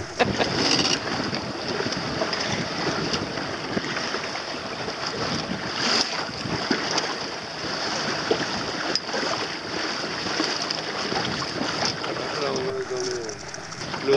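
Wind buffeting the microphone and water rushing past the hull of a small boat under way, a steady rough noise throughout.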